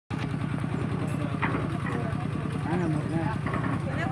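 Small engine of a drum concrete mixer running steadily, with people's voices over it.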